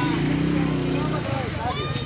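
Men's voices in a busy street market over the steady rumble of a small engine running close by; a held, pitched sound fills the first second and a half.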